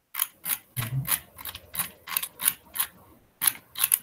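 About a dozen sharp, separate clicks, a few a second, from the computer's controls as pages of a document are skipped through.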